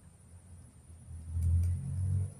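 A low rumble that swells about a second in and holds loud for about a second.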